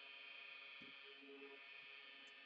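Near silence: faint steady hum of room tone.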